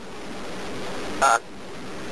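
Steady hiss of a recorded 911 phone call, growing slightly louder, with a short hesitant 'uh' from the caller a little over a second in.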